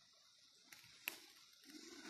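Near silence: faint outdoor background with a single short click a little over a second in.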